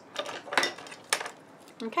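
A few short light clicks and taps of small craft tools and card being handled and set down on a cutting mat.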